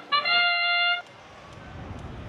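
FRC field match-start sound effect: a brass-like fanfare of a few quick notes ending on one loud held tone that cuts off about a second in. A low rumble builds after it.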